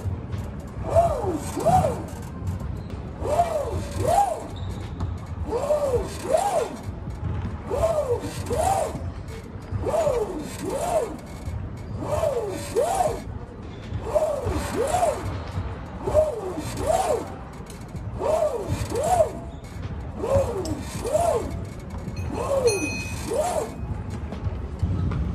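Background music: a looping beat with a pair of rising-and-falling gliding notes repeating about every two seconds.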